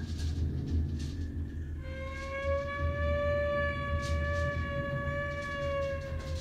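Free improvisation for strings and percussion. About two seconds in, a bowed string enters with one long held note that bends up slightly in pitch at first, over a steady low rumble and scattered soft taps.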